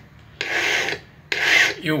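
Two strokes of a flat steel hand file across the inner blade of a pair of pliers, each a rasping scrape of about half a second, with a short gap between them. The file is cutting the inner bevel of the jaw to even up the cutting edges.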